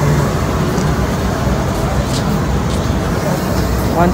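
Steady rumbling background noise of a railway platform beside a standing passenger train, with indistinct voices in the background.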